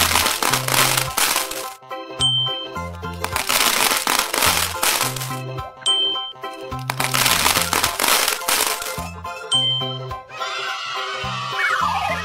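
Cheerful children's background music with a recurring animated sound effect of small balls pouring and rattling into plastic cups. The pouring comes as three crackling bursts of about two seconds each, roughly three seconds apart. A swishing glide follows near the end.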